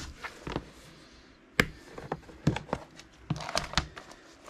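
Hands handling a translucent plastic storage case and leafing through papers in plastic sleeves: scattered clicks and soft crinkling, with one sharp click about one and a half seconds in.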